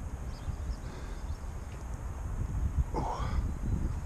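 Wind rumbling on the microphone, with handling noise, and a brief voice-like sound about three seconds in.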